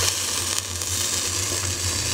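Meat sizzling on the grate of a small charcoal grill over glowing coals: a steady hiss, with a steady low hum underneath.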